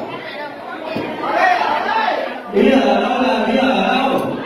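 Party guests talking over one another around a dinner table in a large room. One voice comes in loud from about two and a half seconds in.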